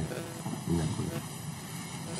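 Quiet, murmured men's voices conferring away from the microphone, over a steady background hum.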